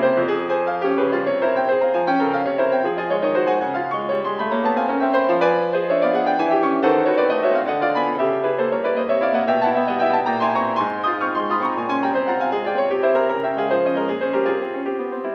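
Solo piano playing fast, dense passagework with sweeping rising and falling runs, from an older recording with dull treble.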